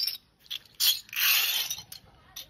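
Metal bottle caps rattling and scraping on a concrete step as they are handled, in a few short bursts, the longest about a second in.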